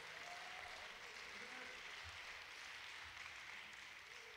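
Faint, steady applause from a congregation clapping for its pastors.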